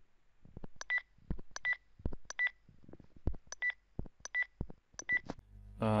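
A smartphone playing a short electronic beep from an app each time its on-screen button is tapped: six brief identical beeps, unevenly spaced about a second apart, with faint knocks between them.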